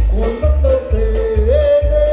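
Live music from a Guatemalan marimba orchestra: a held melody note that steps up in pitch about halfway through and is then sustained, over a steady bass beat of about two pulses a second.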